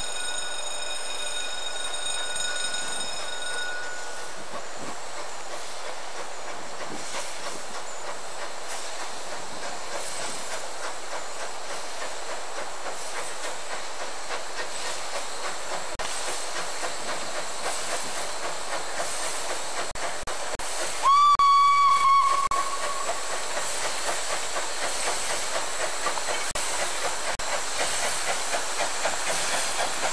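Narrow-gauge steam locomotive running past with steam hissing. Its whistle sounds steadily for the first few seconds and cuts off, then again, louder, for about a second and a half about two-thirds of the way through. Near the end the running settles into a regular beat.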